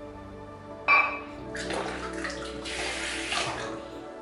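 Water running from a bathroom tap for about two seconds, just after a sudden sharp clink about a second in. Soft background music continues underneath.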